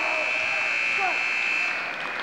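Gym scoreboard buzzer sounding one long, steady, high electronic tone that cuts off suddenly near the end, marking time running out in the wrestling bout. Voices can be heard faintly beneath it.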